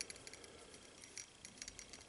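Faint, scattered light ticks of a steel hex driver tip touching and seating in the spindle bolt inside a metal helicopter blade grip, with more of them in the second half.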